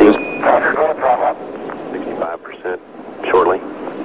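Intermittent voice chatter with pauses, opened by a short, high, steady beep at the very start.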